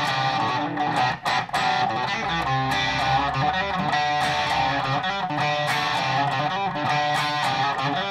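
Electric guitar playing a fast, dense riff of many notes, with two brief breaks about a second in. The riff is one its player calls almost impossible to play.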